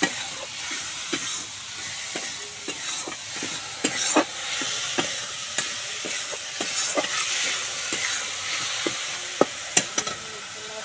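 Fish and masala sizzling in oil in a steel kadhai while a metal spatula stirs and scrapes against the pan, making frequent irregular clicks, with a few louder knocks about four seconds in and twice near the end.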